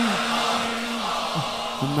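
A lead reciter's held sung note ends and a large crowd of mourners' voices fill the pause. He starts the next sung line near the end.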